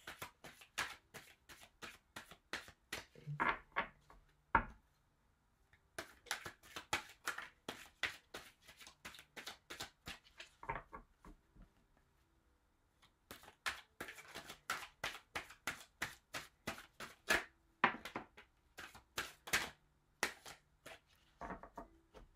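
A deck of tarot cards being shuffled by hand: quick, soft card slaps, about three a second, in three runs with two short pauses.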